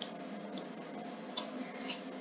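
Quiet background noise with about four faint, sharp clicks spread through the pause.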